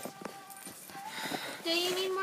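Handling noise as a handheld camera is picked up and moved: a couple of knocks right at the start, then faint rustle and quiet voices, with a person starting to speak or hum near the end.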